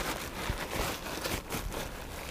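Rustling of a bag or food wrapper being rummaged through by hand, a steady run of small crinkles.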